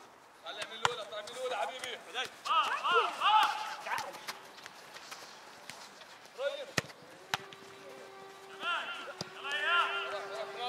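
Youth football players shouting calls to each other across the pitch, with sharp thuds of the ball being kicked now and then. A thin steady tone comes in past the middle.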